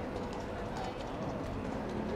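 Horse hooves clip-clopping on cobblestones, over the chatter of people in the square.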